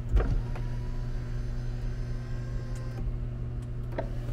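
Ferrari 488 GTB power window raising the door glass: a click, then the window motor running steadily for about three seconds and stopping, with a knock near the end as the glass seats.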